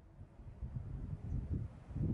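Wind buffeting the microphone: an irregular, fluttering low rumble that starts faint and grows louder toward the end.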